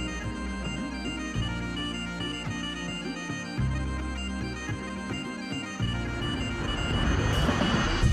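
Music with a bagpipe (gaita) melody held over steady low notes. It grows louder over the last couple of seconds.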